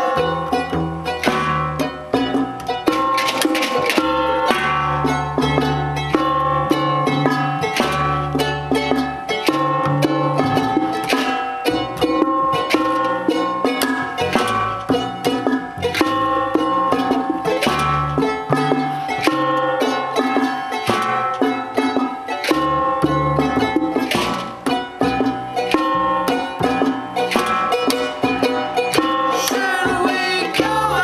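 Acoustic band playing an instrumental passage: quickly plucked charango over sustained double bass notes, with junk percussion striking a steady beat.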